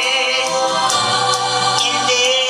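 A man singing a gospel song into a microphone over instrumental accompaniment, holding a long note with vibrato.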